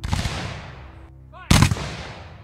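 Black-powder muskets fired in volley: two loud shots about a second and a half apart, each with a long echoing tail.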